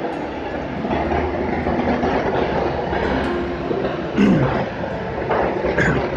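Steady, fairly loud rumbling background noise with no words, and a brief faint pitched sound about four seconds in.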